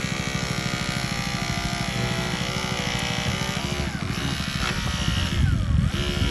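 Small engine running steadily at a constant speed with a buzzing drone, swelling briefly near the end.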